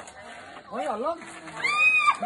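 People's voices: a short call about a second in, then a long high-pitched squeal, like a shriek of excitement, held for about half a second near the end.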